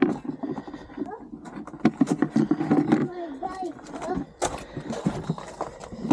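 Plastic bokashi compost bucket being handled: irregular clacks and knocks from its rim, handle and perforated drainage plate as it is taken apart.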